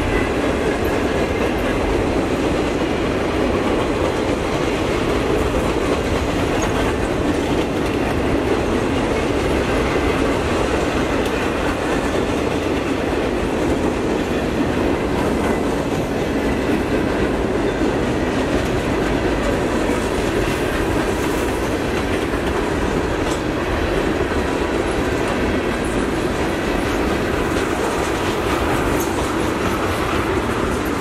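Freight cars rolling steadily past: a continuous, even rumble and clickety-clack of steel wheels on rail from a long mixed train of boxcars, flatcars and tank cars.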